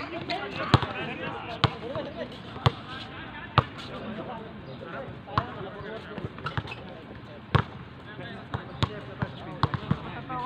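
Basketball bouncing on an outdoor hard court: sharp thuds about once a second for the first few seconds, then at uneven intervals, with players' voices in the background.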